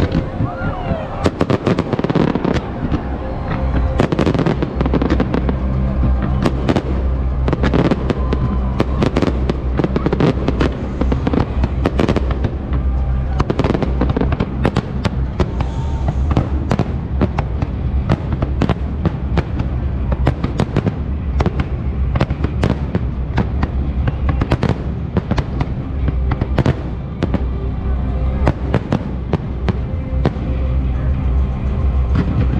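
Fireworks going off in a rapid, dense run of sharp bangs, several a second, over a steady low hum or bass.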